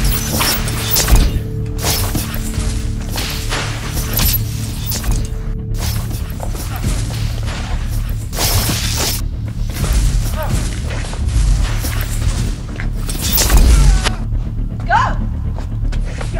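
Dramatic film score with a sustained low drone, cut through again and again by sudden impact and blast sound effects from spells. The loudest blast comes near the end.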